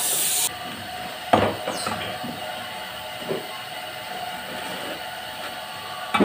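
A high hiss cuts off about half a second in. A sharp knock follows about a second later and a softer one near the middle, over a steady background hum: tools and plywood being handled on a workbench.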